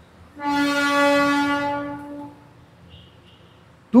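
A vehicle horn sounds one steady, single-pitched blast of about two seconds, starting about half a second in and fading out.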